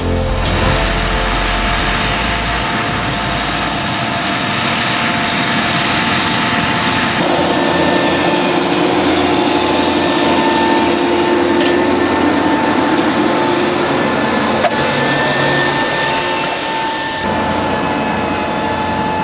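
A Fendt Vario tractor working a field: a steady engine and transmission whine under a dense rattle and crackle as a disc implement cuts through the soil. The sound changes abruptly about seven seconds in and again near the end.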